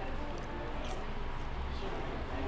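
Restaurant background ambience: a steady low hum with faint voices in the background and a few soft small clicks.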